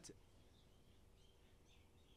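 Near silence: faint room tone with a few faint, short high chirps.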